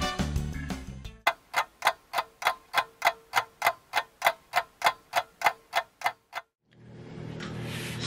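Background music fading out, then a clock-ticking sound effect, about three even ticks a second, that cuts off suddenly: it marks time passing.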